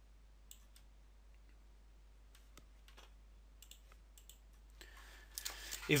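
Computer mouse clicking: about eight scattered single clicks, over a faint steady low hum.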